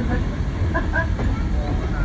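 Steady low rumble of a train running, heard from the car behind a steam locomotive, with faint voices about a second in.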